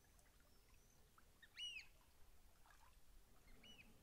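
Near silence broken by two short, faint bird calls, one about a second and a half in and one near the end.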